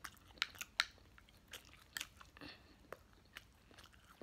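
Faint chewing of a mouthful of food: irregular short, sharp mouth clicks and smacks, a dozen or so across the few seconds.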